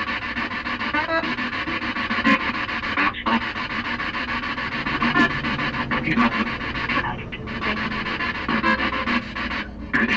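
Spirit box sweeping through radio frequencies: a continuous choppy hiss of static broken by brief snatches of sound, with a few short dropouts.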